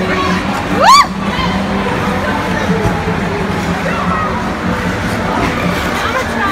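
Crowd chatter at an ice rink over a steady low hum. About a second in, a person lets out a short high squeal that rises and then falls.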